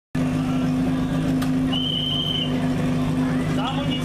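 Portable fire-pump engine running steadily at a constant pitch.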